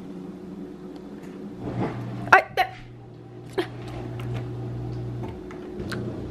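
Whirlpool dishwasher's motor humming low and steady, starting about two seconds in and cutting off abruptly about a second before the end. A few short, high-pitched voice sounds come over it near the start of the hum.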